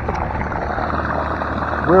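Electric trolling motor running steadily with a low hum, its propeller churning up mud in very shallow, mucky water.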